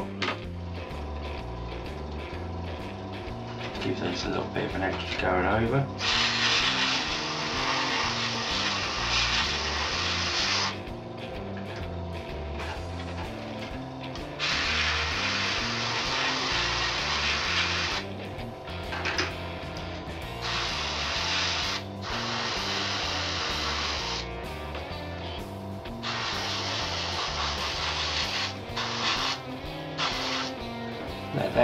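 Airbrush spraying paint in about five hissing bursts of a few seconds each, starting about six seconds in, each cut off sharply, over background music.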